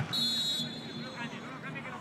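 Referee's whistle: a single high blast about half a second long, signalling that the penalty kick may be taken, over a murmur of crowd voices.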